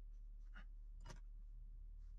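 Faint handling sounds of hand sculpting on plastiline clay: two short rubs or scrapes about half a second apart, over a low steady hum.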